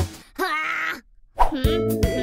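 A cartoon boy's short wordless cry, about half a second long, then a brief silence before background music comes in with plucked guitar.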